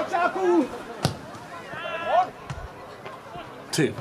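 Players shouting across a grass football pitch, with two sharp thuds of a football being kicked, one about a second in and one near the end.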